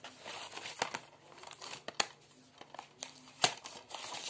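Plastic DVD cases and discs being handled on a bed: an irregular plastic rustle with several sharp clicks and taps.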